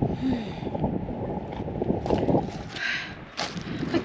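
Wind rumbling on the camera microphone, with a hiker's heavy breaths from the climb and a short voiced exhale near the start.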